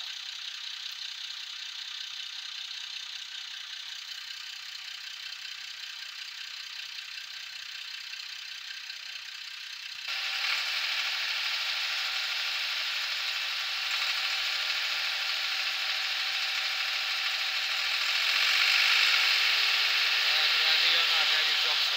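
Farm tractor diesel engine running steadily with a rattle. About halfway through it gets suddenly louder under load as the hydraulic tipper lifts the loaded trolley bed, and it pushes harder again near the end as the bed rises further.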